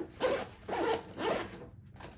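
Greenroom 136 Metrorunner sling bag's front-pocket zipper being pulled in three short runs about half a second apart. This zipper frequently catches on the thick fabric band of the key carabiner inside the pocket.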